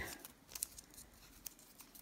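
Faint crinkling and a few small ticks of paper tape being handled and wrapped around a flower stem.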